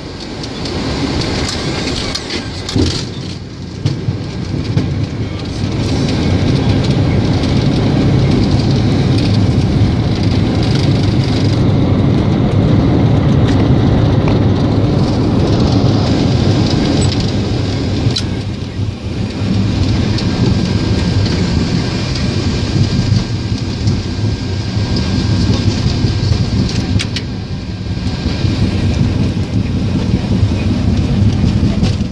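Boeing 737 takeoff heard from inside the cockpit: the twin turbofan engines at high thrust under a loud, steady rumble of the roll and rushing air, growing louder about six seconds in.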